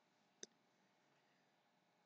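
Near silence with a single faint click a little under half a second in.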